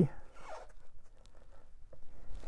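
Hook-and-loop straps of a cycling shoe being peeled open, a soft ripping sound mostly in the first second.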